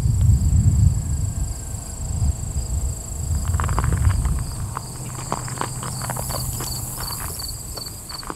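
Footsteps crunching on a gravel driveway, starting about three and a half seconds in, over steady insect buzzing with a repeating chirp. A low rumble fills the first half.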